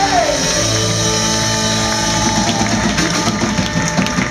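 Live rock band playing loudly: electric guitar, keyboard and drum kit. A held note slides down in pitch just after the start, then steady held notes carry on over the drums.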